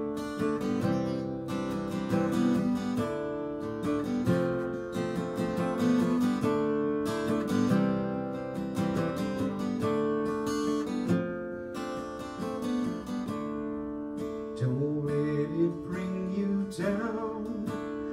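Steel-string acoustic guitar strummed in chords: an instrumental passage of the song with no singing.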